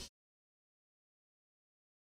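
Dead silence: the sound track cuts out completely just after the start.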